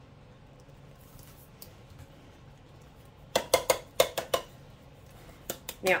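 A metal can of cream-style corn knocking against a crock pot as it is tipped and shaken empty. About three seconds in there is a quick cluster of sharp knocks, and a couple more come near the end.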